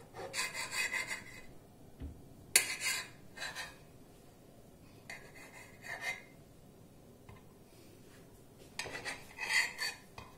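Kitchen knife sawing through a bread sandwich on a plate, in several short strokes with pauses between.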